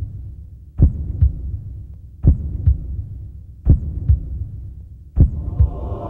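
A heartbeat sound effect: deep double thumps, lub-dub, repeating about every second and a half over a low rumble. Shortly before the end a sustained drone swells in beneath the beats.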